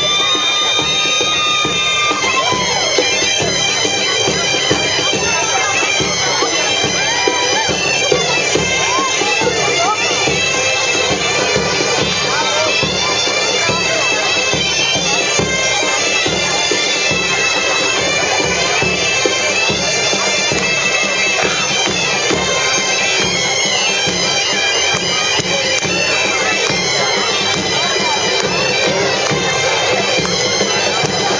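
Galician bagpipes (gaitas) playing a tune over their steady drone, with a drum beating along.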